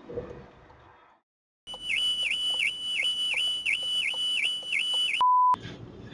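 An electronic warbling alarm tone: a high steady note that drops in pitch and springs back about three times a second, for about three and a half seconds. It ends in a short, loud, steady single-pitch beep, after which only quiet road noise is left.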